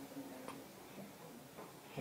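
Quiet room with two faint clicks, about half a second and a second in.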